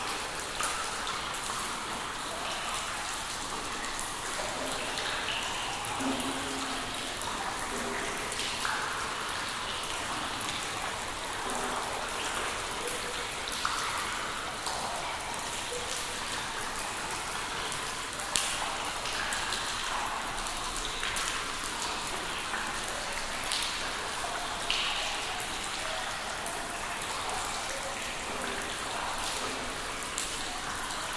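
Water dripping in a cave: drops falling irregularly into pooled water, each a short plink at a different pitch, over a steady hiss.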